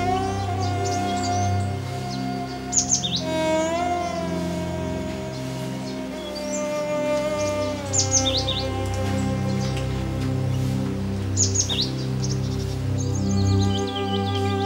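Background music of long held, slowly gliding tones, with a bird's quick high chirping call heard three times over it, a few seconds apart.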